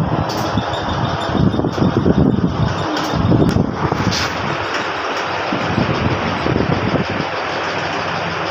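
Hydraulic power pack of a compression testing machine running steadily, its electric motor and pump loading a paver block while the load climbs. A few short sharp clicks come between about one and a half and four seconds in.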